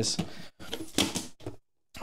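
Plastic knocking and scraping as a clear plastic cereal-container filament drybox is opened and the container lifted off its roller base. The sound stops abruptly near the end.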